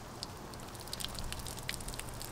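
Water pouring from a plastic watering can onto soil in seed trays: an irregular patter of many small splashes. The pour is not very gentle.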